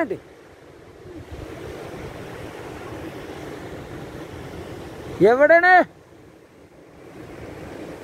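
Sea surf washing over a rocky shore: a steady rushing noise. It is broken about five seconds in by one short, loud spoken word.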